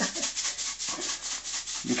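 Salt and pepper grinder being worked over a pan, a steady run of rapid rasping grinding clicks.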